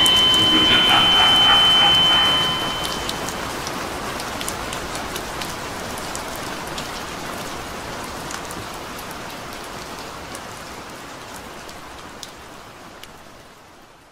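The last notes of the music end about two seconds in, leaving a steady patter of rain with scattered drop clicks. The rain slowly fades out to the end.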